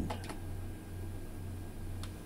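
Quiet room tone: a steady low hum and faint hiss, with a few faint computer-mouse clicks in the first half second.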